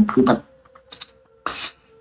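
A woman's voice says a short filler phrase, then a quiet pause with a few faint clicks about a second in and a short soft hiss near the end.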